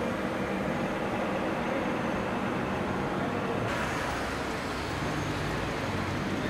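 Steady street noise of traffic and idling vehicle engines, with a low engine hum underneath. The noise becomes a little brighter and hissier after about three and a half seconds.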